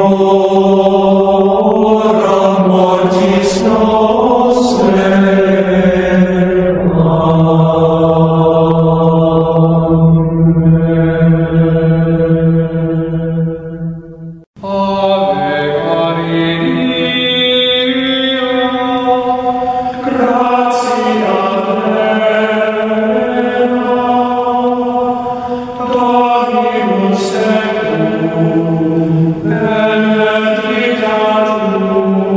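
Gregorian chant, tuned to 432 Hz: voices singing slow, long-held notes. Halfway through, the chant fades out to a brief break and a new chant begins.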